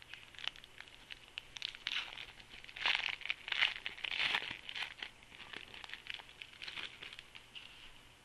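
Foil wrapper of a 2010 Score football card rack pack being torn open and crinkled by hand: a run of sharp crackles, with a louder stretch of tearing about three to four seconds in.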